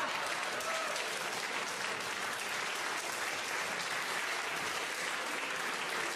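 Live theatre audience applauding steadily.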